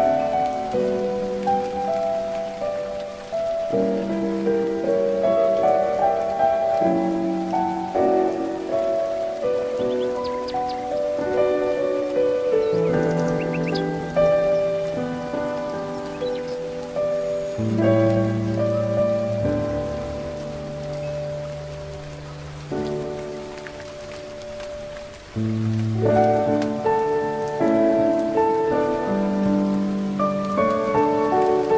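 Slow, gentle solo piano music, single notes and soft chords ringing and fading, over a soft, steady, rain-like hiss. A few brief high bird chirps come in around the middle.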